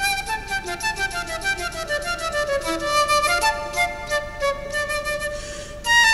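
Concert flute playing a fast run of short, mostly descending notes in a Turkish tune, then a short breath about five and a half seconds in before a loud held note near the end.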